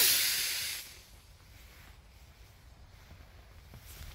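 Model rocket's solid-fuel motor hissing as the rocket climbs away from the pad, the rush fading out within about the first second.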